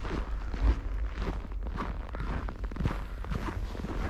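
Footsteps in snow, about two steps a second, over a steady low rumble.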